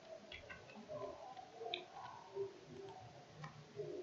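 Quiet room tone with a few faint clicks from a computer mouse, clicking a button on screen.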